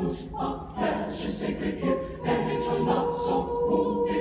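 Mixed choir of men and women singing, holding long steady notes.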